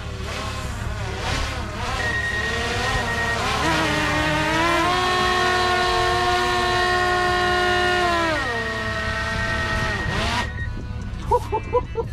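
DJI Mavic Air 2 quadcopter's propellers whining close by as the drone is brought down and caught by hand; the whine wavers, holds steady, then falls in pitch as the motors spin down, dying away shortly before the end.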